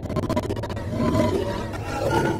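Production-logo sound effect: a rough, rasping roar-like sound over a steady low hum, starting suddenly at the beginning and holding steady.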